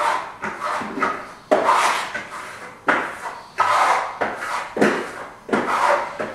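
Steel plastering trowel scraping across the wall in a run of short strokes, about one or two a second, spreading and burnishing a thin metallic Venetian plaster top coat.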